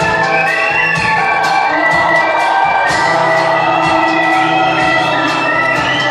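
Live band music heard from the audience: an instrumental stretch with a held, sliding lead melody over guitar and a steady drum beat.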